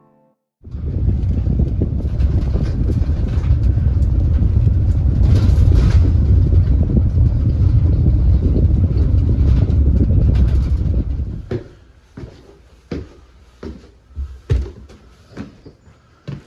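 Loud, steady low rumble of a vehicle driving, heard from inside the cab, lasting about eleven seconds. It then gives way to a string of separate short knocks and thumps.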